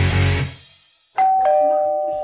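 Background rock music fades out, and after a short gap a two-note ding-dong chime sounds: a higher note followed at once by a lower one, both held for about a second.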